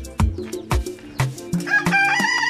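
Background music with a steady drum beat. Near the end a rooster begins to crow, in one long call.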